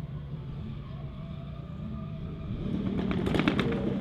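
Low engine rumble of a car that grows louder over the last second or so, with a burst of sharp crackles near the end.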